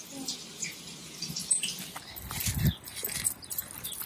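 Two Cavalier King Charles spaniels walking on leashes over gravel and grass: scattered light clicks and rustles of paws, collar tags and footsteps, with a low thump a little past halfway.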